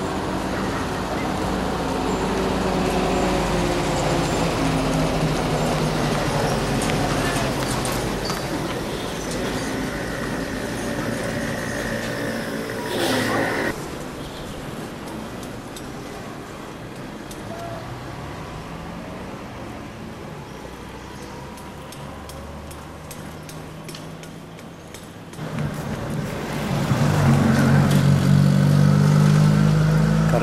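Motor-vehicle engines in street traffic. An engine runs close by at first, a short loud burst of noise comes about thirteen seconds in, the traffic is quieter for a while, and near the end an engine runs loud and low.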